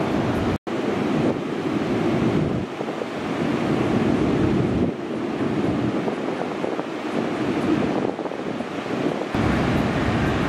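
Heavy ocean surf breaking and rushing, with wind buffeting the microphone. The roar cuts out for an instant about half a second in, then shifts abruptly in level several times.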